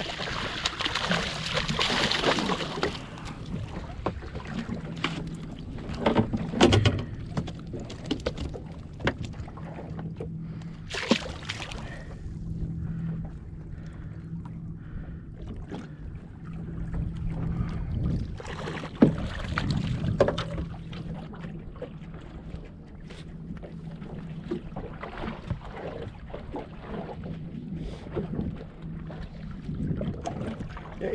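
A hooked sea bass splashing at the surface beside a small boat in the first few seconds, then scattered knocks and clicks of gear being handled. A steady low hum from the boat runs underneath.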